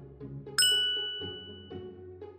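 A single bright bell-like ding, struck about half a second in and ringing out as it fades over about a second and a half, with soft background music underneath.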